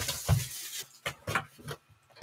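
A cardboard trading-card hobby box set down on the table with a dull thump, followed by a few short taps and scrapes of cardboard being handled.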